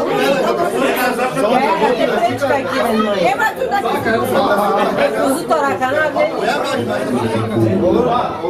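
Several men talking over one another at a table: overlapping conversational chatter in a room.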